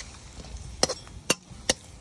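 A metal spoon knocking against a metal skillet three times, under half a second apart, while stirring chunky vegetables in sauce.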